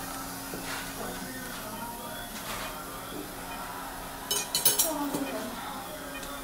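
Metal surgical instruments clinking together in a short rattle of sharp clicks about four seconds in, over a steady low hum.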